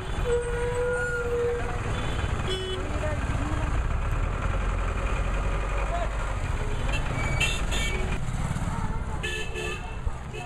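Street traffic: vehicle engines running with a steady low rumble, amid the voices of a roadside crowd. There are short horn toots about two-thirds of the way in and again near the end.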